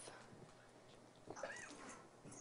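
Near silence with a faint hiss, then a small child's faint voice saying "That's all" about a second and a half in.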